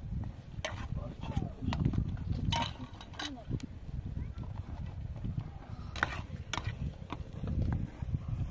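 A metal ladle stirring and knocking in a pan of eggs cooking over a wood fire: scattered sharp clicks over a low, uneven rumble, with faint voices.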